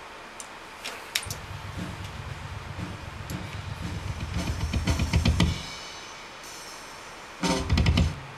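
Acoustic drum kit played: a few light ticks, then a fast low drum roll growing louder for about four seconds, then a pause and a loud hit near the end.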